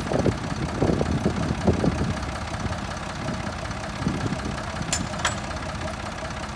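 Volvo BM 400 Buster tractor's engine idling, with an uneven low chugging. Two short clicks sound about five seconds in.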